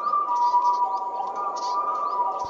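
Short, high bird chirps repeating about every half second over several soft, steady held tones of background music.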